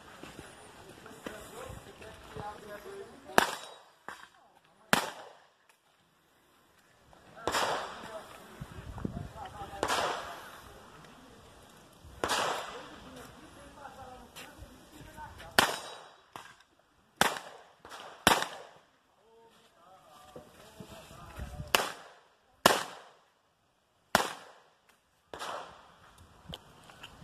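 Pistol shots fired through a practical-shooting stage: about a dozen sharp cracks, singly or in quick pairs, spaced irregularly one to three seconds apart, some with a short echo trailing off.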